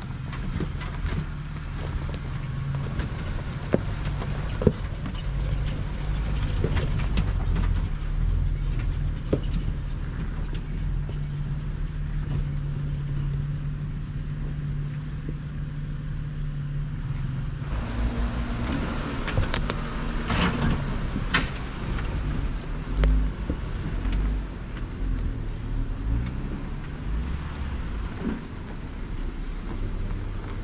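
Off-road vehicles, Jeeps and a Toyota 4Runner, crawling one after another over a rocky trail in low gear. Their engines run steadily under the sharp knocks and crunches of tyres on rock, which gather about two-thirds of the way through as the engine note changes with the next vehicle coming close.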